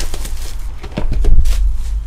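Clear plastic shrink wrap crinkling as it is stripped off a card box, with scattered sharp crackles. About a second in, a low, heavy rumble of handling or a bump against the table is the loudest sound.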